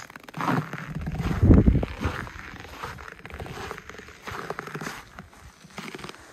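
Footsteps crunching and creaking in dry, frozen snow, a series of uneven steps. A low rumble on the microphone, from wind or handling, is the loudest part, about a second in.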